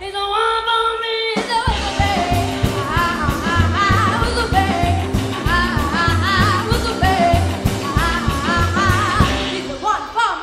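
Rockabilly band playing live with a female singer, drums, upright bass and electric guitar. A sung note is held almost alone for about a second and a half, then the band comes back in with a steady beat under her vocal line. The accompaniment drops out again briefly near the end.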